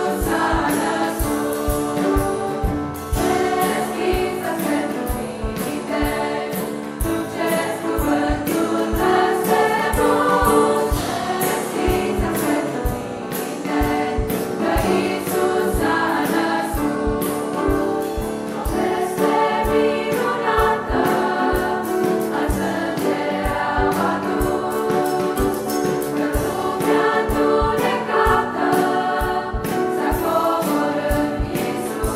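A choir singing a Romanian Christmas carol (colindă) in harmony, without a break.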